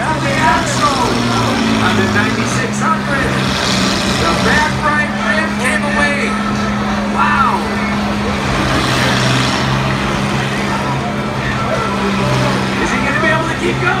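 Combine harvester engines running under load as the machines push against each other, a steady low drone that rises and falls slightly in pitch.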